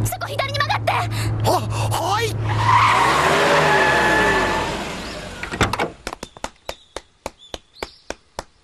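Car tyres screeching as the car skids through a sharp left turn, the squeal wavering up and down for about three seconds before fading. After it comes a quick run of short sharp clicks.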